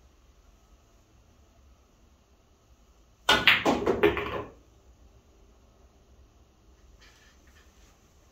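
Pool shot: the cue tip strikes the cue ball about three seconds in, followed at once by a quick run of hard clicks over about a second as the balls collide and come off the cushions.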